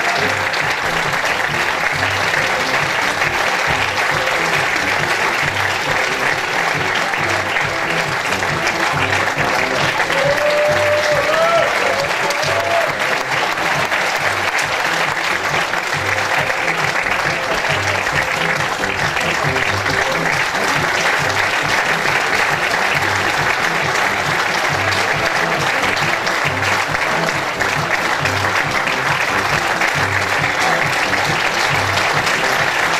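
Theatre audience applauding steadily throughout a curtain call, over music with a steady beat.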